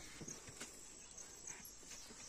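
Quiet background with a few faint, light knocks.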